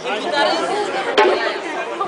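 Several people talking at once, with one sharp knock a little past a second in.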